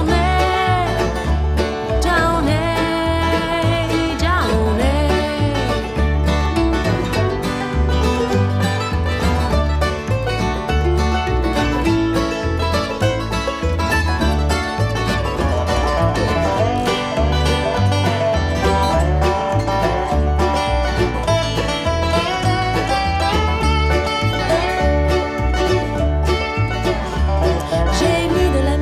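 Instrumental break of an acoustic country-bluegrass song: acoustic guitar, mandolin and a lap-played resonator guitar over a stepping bass line. The resonator guitar's sliding notes bend up and down.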